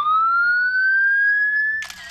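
Police siren wail starting suddenly and rising steadily in pitch, turning to fall near the end, where a camera shutter clicks.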